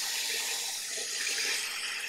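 Steady rush of water as a garden-hose tank rinser wand sprays into an Atwood aluminum RV water heater tank through its drain opening and the water pours back out, flushing mineral deposits from the tank.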